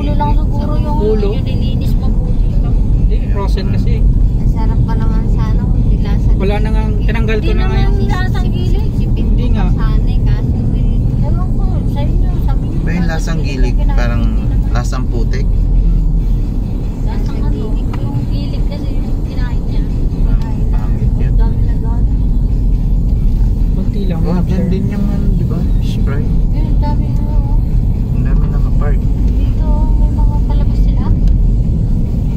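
Steady low rumble of road and engine noise inside a moving car's cabin, with indistinct voices coming and going over it at several points.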